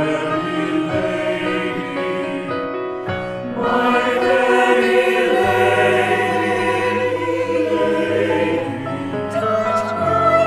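Mixed-voice choir of men and women singing a sustained choral passage with piano accompaniment, swelling louder about a third of the way through.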